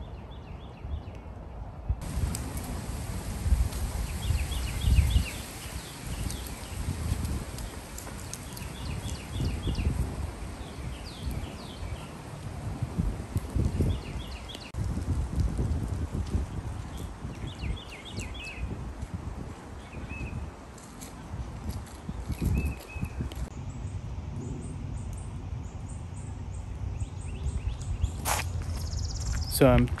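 Outdoor ambience: songbirds chirping in short, quick groups of notes every few seconds, with a few single whistled notes. Under them run irregular low thuds and rumble from the hand-held phone microphone.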